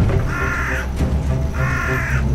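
A crow cawing twice, each caw under a second long, over dark, low background music.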